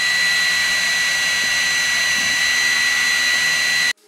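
Laser engraver running steadily, its laser-module cooling fan giving an airy hiss with a constant high-pitched whine. The sound cuts off suddenly near the end.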